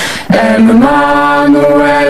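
A youth vocal ensemble singing a Christian hymn-like song in long held notes. A brief break comes just after the start, and then the voices return and step up in pitch.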